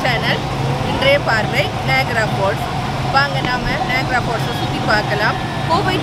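A woman speaking over busy street noise, with a steady low hum underneath.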